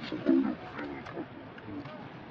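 A bird's low cooing call: a few short notes, loudest in the first half second, then fainter, over light outdoor background noise.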